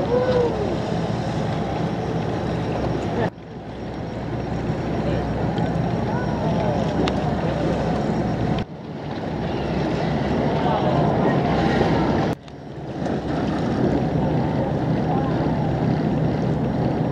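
A boat's engine running steadily under wind and water noise, with a few short calls that rise and fall in pitch over it. The sound cuts out abruptly three times and fades back in.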